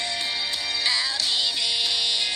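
Music: a song with a singing voice over a busy backing.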